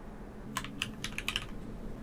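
Typing on a computer keyboard: a quick run of key clicks lasting about a second, starting about half a second in, as an email address is entered.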